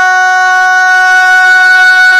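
A single long musical note held perfectly steady, rich in overtones, sounding between the sung lines of a naat.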